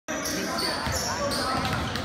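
A basketball game on a hardwood gym floor: sneakers squeak in short, high chirps and a ball is dribbled, over the echoing chatter of spectators.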